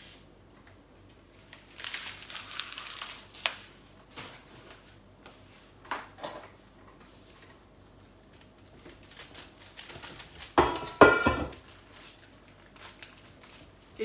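Kitchen handling sounds: a spoon, bowls and utensils clinking and knocking on a counter, with scattered rustling. A rustle comes about two seconds in, and the loudest clatter, with a brief ringing, comes about ten to eleven seconds in.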